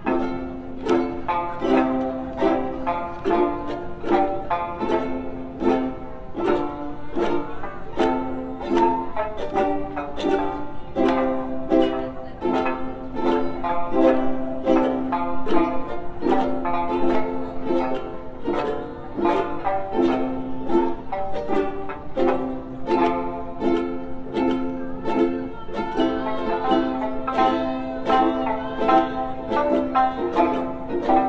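Okinawan sanshin and ukuleles playing together as an ensemble: a continuous stream of plucked and strummed notes carrying a melody.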